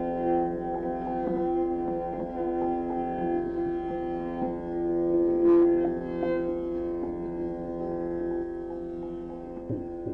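Carnatic violin duet playing in raga Bilahari, holding long sustained notes, with a brief sharp stroke a little past the middle.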